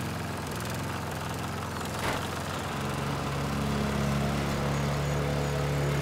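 A small engine running steadily, growing a little louder after about two seconds.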